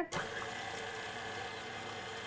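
KitchenAid Professional stand mixer switched on at the start and running steadily, its beater blending sugar, vanilla and melted butter in the steel bowl.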